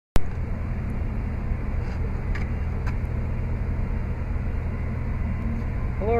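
Steady low outdoor rumble that starts abruptly, with a few faint clicks about two to three seconds in.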